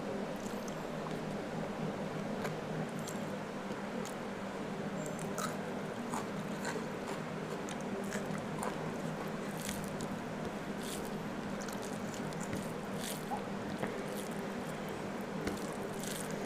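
Close-miked chewing and wet mouth clicks of a person eating spicy snail curry with rice by hand, scattered short clicks over a steady low hum.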